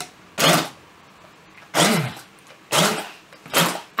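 Handheld stick blender pulsed in four short bursts while puréeing cherries, the motor speeding up and dropping away with each pulse.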